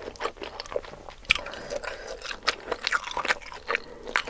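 Close-up, wet chewing and mouth sounds of someone eating instant noodles in a thick spicy seblak sauce: irregular smacks and small clicks, with one sharper click about a second in.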